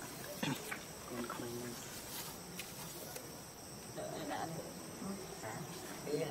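A steady, high-pitched drone of insects, with faint human voices talking now and then and a few small clicks.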